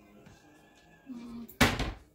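A short, loud clatter near the end as a large kitchen bowl is grabbed and handled.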